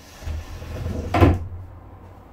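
Pull-out wooden slat bed being pushed shut: the frame slides in with a rising rubbing noise for about a second, then closes with a loud knock.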